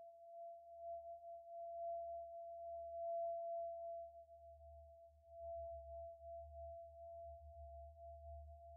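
Feedback drone from an Empress ZOIA Euroburo running the Feedbacker patch, a reverb fed back into itself through a chain of EQ filters: a single steady, pure mid-pitched tone that swells and eases in loudness, over a faint low rumble.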